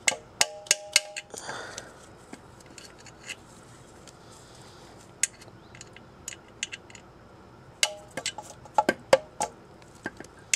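Wrench work on the hydraulic line fitting inside an NV3500 transmission's bell housing: bursts of sharp metallic clicks with a short ring, about four a second, in the first second and again from about eight seconds in, with a brief scrape early on and a few faint ticks in between.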